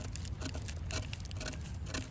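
Small knife blade scraping and picking at silver birch bark and the wood beneath: a quick, irregular run of small scratches and clicks, digging into a beetle exit hole.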